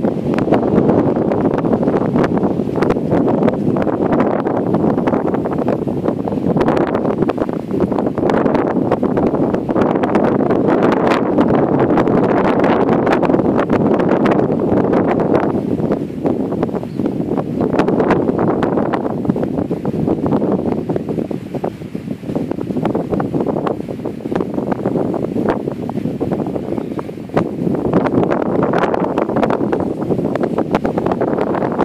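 Loud wind noise buffeting the microphone, a steady rush that eases somewhat in the second half and gusts up again near the end.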